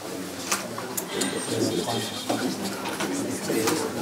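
Indistinct low voices of people talking in a room, with a few sharp clicks in the first second.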